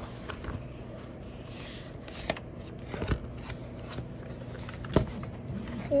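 A paper booklet being opened and handled, its pages rustling and flicking, with a few sharp clicks spread through.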